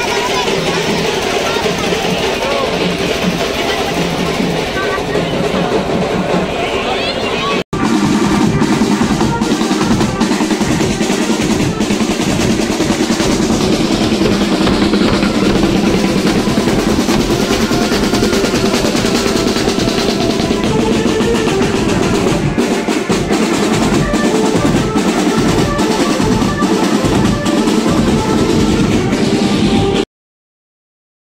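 Loud procession music with crowd voices; after a cut about eight seconds in, a marching band's bass drum and snare drums play a steady, rapid beat.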